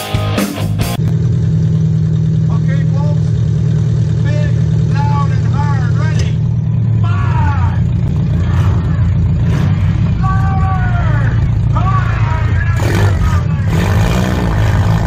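Demolition derby car's engine running steadily at low revs, heard from inside the stripped cabin.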